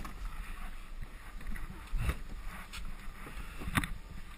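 Wheels of a gravity luge cart rolling slowly over a concrete track with a steady low rumble and some wind on the microphone, and a knock about two seconds in and a sharper one near the end.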